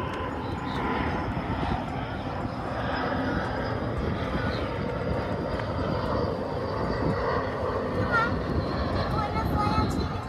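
Steady low rumbling drone, with a few faint short chirps about eight seconds in.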